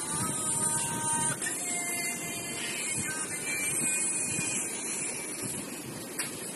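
A song playing through a small speaker, thin and noisy, with a few held notes over a steady hiss.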